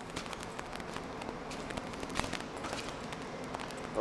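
Faint footsteps on a bare concrete floor, a few irregular soft ticks over a steady background hiss.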